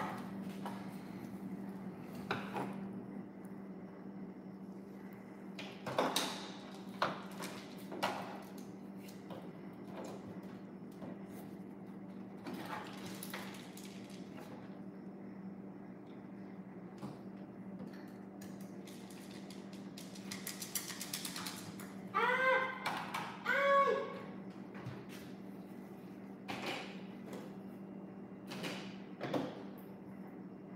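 Plastic toys being handled on a table: scattered taps and clacks at irregular intervals over a steady low hum. About two-thirds of the way through, a child's voice makes two short high sounds.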